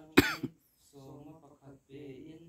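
A person coughs once, loud and close to the microphone, in two quick bursts just after the start.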